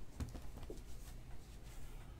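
Faint handling noise on a tabletop, a few light clicks and taps, over a steady low hum.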